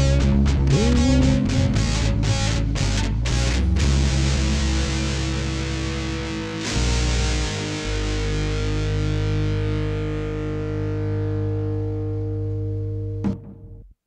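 A rock band's ending: distorted electric guitar, bass and drums play a run of accented hits for the first few seconds, then a final chord is struck and left ringing, fading slowly. A short thump comes near the end as the sound cuts off.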